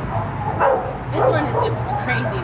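Two dogs barking and yipping at each other in rough play, with loud calls about half a second in and again just after one second.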